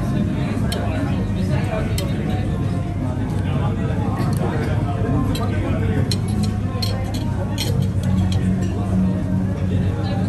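Busy restaurant dining-hall ambience: background chatter of many diners with cutlery and dishes clinking now and then, over a steady low hum.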